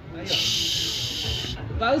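A steady high hiss lasting just over a second, starting and stopping abruptly, with faint voices under it.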